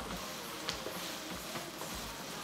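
Stir-fry sizzling quietly in a wok as a wooden spatula stirs it, with a couple of faint taps of the spatula.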